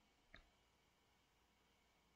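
Near silence, with one faint click about a third of a second in.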